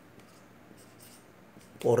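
Faint strokes of a felt-tip marker writing on a whiteboard.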